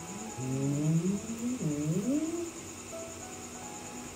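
A drawn-out, low, wavering call of about two seconds that rises, dips sharply and rises again, over soft background music.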